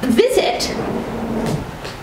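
Sheets of printed paper rustling as they are shifted and turned, with a woman's voice holding a single drawn-out hesitation sound for about a second.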